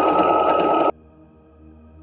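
Electric sewing machine running fast while stitching. Its motor gives a steady whine over the rapid clatter of the needle, then stops abruptly just under a second in.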